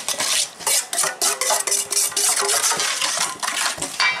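Metal spoon stirring a runny marinade in a stainless steel bowl, scraping and clinking against the bowl's sides in quick, repeated strokes.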